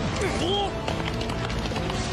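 Anime battle soundtrack: dramatic music over a dense bed of battle noise, with one short rising-and-falling cry about half a second in.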